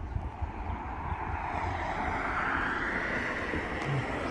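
A vehicle going by, a steady rushing sound that slowly swells and rises in pitch.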